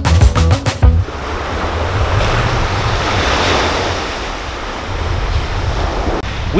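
Small waves breaking and washing up a sandy beach: a continuous surf wash that swells and eases, with a low wind rumble on the microphone.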